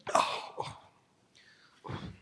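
A man making exaggerated wordless vocal noises into a microphone, imitating a bored listener. A loud breathy burst comes just after the start, then a short second one, and a falling sound near the end.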